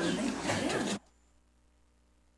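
Laughter and voices in a small room, cut off abruptly about a second in, leaving near silence.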